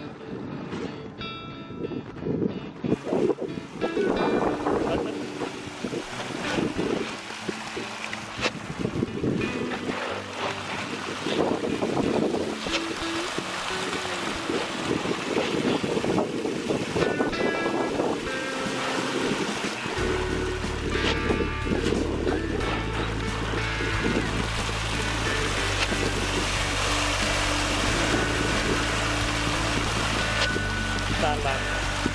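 Pangasius catfish churning and splashing at the water surface as they feed in a dense shoal. Background music plays over it, with a steady low bass coming in about two-thirds of the way through.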